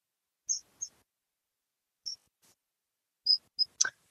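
A few short, high-pitched chirps, singly and in quick pairs, with a sharp click near the end, against an otherwise silent line.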